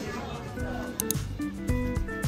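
Restaurant table chatter at the start, then background music comes in about a second in: a track with guitar and a steady beat.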